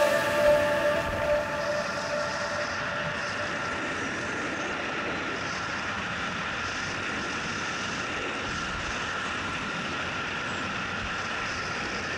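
Skis running steadily over a groomed piste with wind rushing past the microphone: an even hiss and rumble with a faint steady hum, unchanging throughout.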